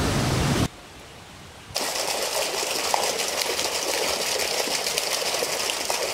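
A stone roller grinding onions on a flat grinding stone, with a coarse grinding rumble, stops within the first second. After a short quiet gap, a steady outdoor hiss of rural surroundings follows.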